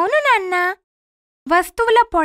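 A girl's high-pitched voice says a short phrase with a rise and fall in pitch. There is a pause, and then another stretch of speech begins about a second and a half in.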